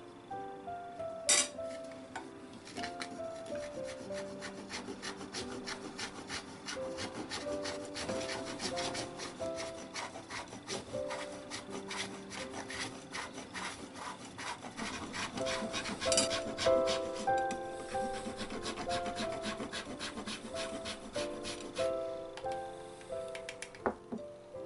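A bar of dark chocolate rubbed back and forth on a fine stainless-steel rasp grater, a long run of quick scraping strokes. There are two sharper knocks, about a second in and again around sixteen seconds.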